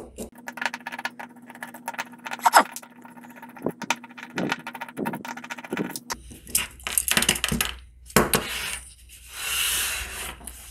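Screwdriver backing the terminal screws out of a motor contactor, sped up: a rapid run of small metallic clicks, scrapes and rattles from the screws and the plastic housing being turned in the hand.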